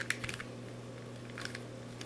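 Faint plastic clicks of a corner-turning octahedron twisty puzzle being turned by hand: a few light clicks near the start and again about a second and a half in.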